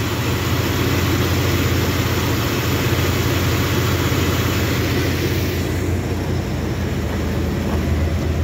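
Pickup truck engine idling steadily with the hood open, running smoothly for now. The owner says it often runs poorly, and worse as it warms up, an intermittent fault he has been chasing through the throttle body and idle air control valve.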